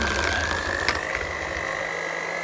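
Electric mixer running, its twin beaters whipping cream cheese icing in a metal bowl: a steady high motor whine that rises slightly in pitch, over a low hum that fades near the end, with one brief click near the middle.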